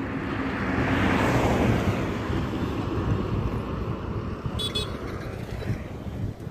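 Highway traffic: a passing vehicle's tyre and engine noise swells and fades over the first two seconds, leaving a steadier rush of traffic with wind on the microphone. A brief high-pitched sound comes about four and a half seconds in.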